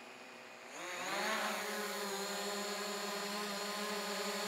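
DJI Mavic Pro quadcopter lifting off. Its four propellers spin up about a second in, the pitch rising, then settle into a steady hover hum.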